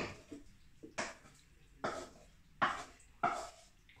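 A utensil scraping and knocking against a cooking pan as cooked mince is spooned out into another dish: a series of short scrapes and taps, roughly one every half second to second.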